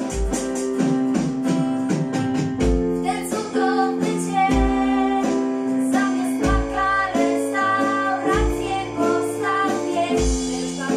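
Live band music: two women's voices singing with acoustic guitar, digital piano and a drum kit, the kick drum landing about every two seconds.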